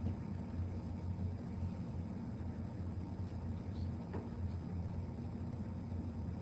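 Steady low hum and hiss of room background noise, with one faint tick about four seconds in.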